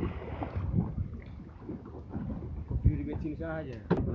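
Low, uneven rumble of wind on the microphone and water moving around a small open boat, with a man's voice briefly near the end.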